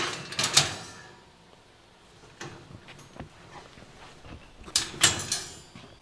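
Metal rattling and clanking of a wire-mesh cage live trap as its drop door is handled and set: a sharp cluster of clatters at the start and another about five seconds in, with a few light ticks between.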